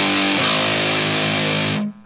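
Distorted electric guitar (PRS SE) playing part of a heavy riff. One held note changes to another about half a second in, and that note rings until it is muted just before the end.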